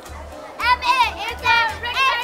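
Children's high-pitched voices calling out over background music with a steady low beat.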